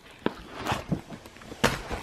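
Pages of a photo album being turned and handled: several short paper rustles and light knocks, the loudest a little before the end.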